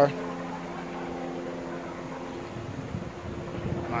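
Steady mechanical hum, made of several fixed low tones over an even rushing noise, with some uneven low rumbling in the last second or so.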